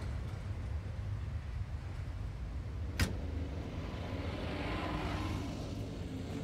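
Street traffic: a steady low rumble of cars, with a single sharp knock about halfway through and a car passing near the end.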